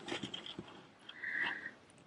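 Faint handling noise of fingers pressing and rubbing on crocheted fabric, with a few light clicks at the start and a short high-pitched sound about a second and a half in.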